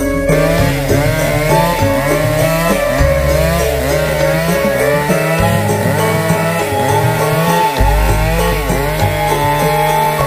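Chainsaw running, its pitch repeatedly dipping and rising as it is revved, heard under background music.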